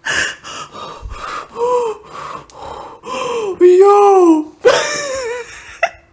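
A woman laughing hard: a quick run of breathy, gasping bursts that turn into high squealing cries of laughter, loudest about four seconds in.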